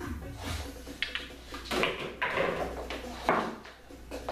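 Pool balls knocking on a pool table: a cue shot, with the ball clacking and dropping into a corner pocket. There are several hard knocks, about a second in, around two seconds in and loudest a little after three seconds.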